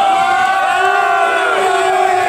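A crowd of people cheering together, several voices holding one long shout.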